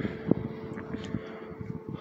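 A steady background hum over a low rumble, with a couple of faint soft clicks.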